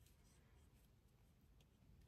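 Near silence: quiet car-cabin room tone with a faint low hum.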